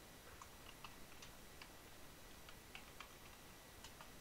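Faint typing on a computer keyboard: about a dozen light, irregular key clicks over quiet room tone.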